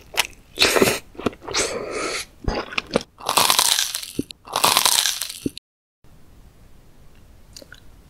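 Close-miked biting and chewing of soft Korean fish cake (eomuk), about six loud wet bites and chews in a row. They cut off suddenly about two-thirds of the way in, leaving only a few faint clicks.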